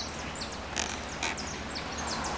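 Birds chirping over light rain in a sunshower: many short, high chirps that fall in pitch, repeated in quick succession over a steady hiss of falling rain.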